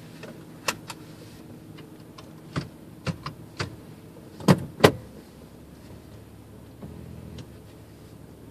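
A car idling, heard from inside the cabin as a steady low hum, with a series of sharp, irregular clicks and knocks; the loudest two come close together about four and a half seconds in.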